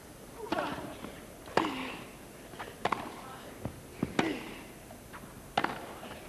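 Tennis rally: a racket strikes the ball five times, roughly once every second and a quarter, with softer knocks of the ball between strokes. A player gives a short grunt falling in pitch on several of the hits.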